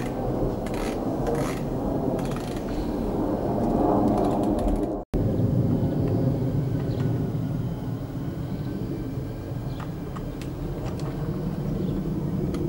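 Outdoor street ambience: a steady low rumble that swells about four seconds in, broken by a sudden dropout at an edit about five seconds in, with a few faint clicks.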